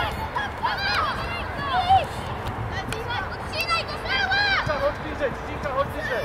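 Young players shouting short, high-pitched calls to each other across the pitch, many overlapping and rising and falling in pitch, over a steady low outdoor rumble.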